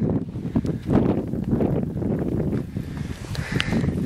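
Wind buffeting the camera's microphone, an uneven low rumble, with rustling and handling noise as the camera moves.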